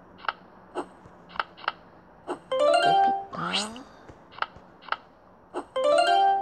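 Tablet memory-matching game sound effects: short plucked notes as picture tiles are tapped and turned over, and twice a quick rising run of plucked notes as a pair is matched. Each run is followed by a short recorded voice announcing the matched character.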